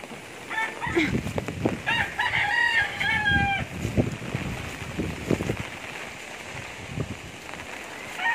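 A rooster crowing: one long crow from about half a second in to nearly four seconds, with low thumps and a steady hiss behind it.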